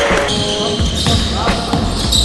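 A basketball bouncing on an indoor court floor during play, several separate bounces, with players' voices.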